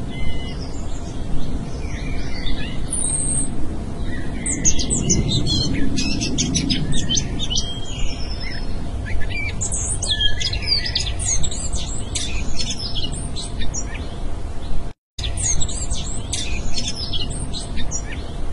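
Background birdsong: many quick, high chirps and tweets in a busy chorus over a low steady rumble. The sound cuts out for a moment about three-quarters of the way through.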